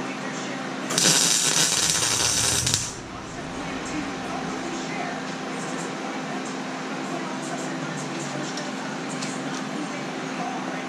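A welder laying a short weld bead on the cart's steel frame: a loud crackling hiss that lasts about two seconds and then cuts off, over a steady low hum.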